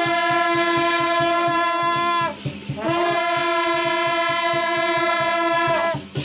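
A group of long straight brass procession horns (shaojiao) blowing long held notes in unison. There are two long blasts, each sagging in pitch as it ends, with a short break about two seconds in and a fast, even low pulse underneath.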